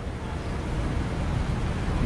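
Steady outdoor city background noise: a low rumble with an even hiss, like distant road traffic.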